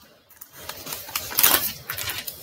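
A quick, irregular run of clicks and taps, loudest about one and a half seconds in.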